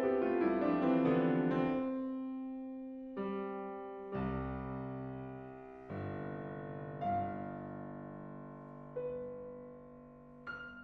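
Concert grand piano played solo: a descending run of notes in the first two seconds settles onto a held low note. Then five slow, separate chords follow, one every second or two, each left to ring and die away, the passage growing gradually softer.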